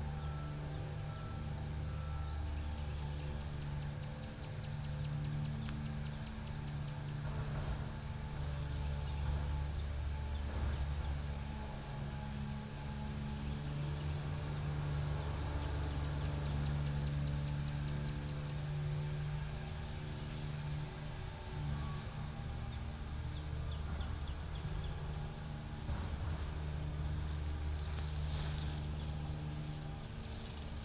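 A steady, low machine hum made of several fixed pitches, from a motor running. Near the end a patch of rustling and clicks comes in over it.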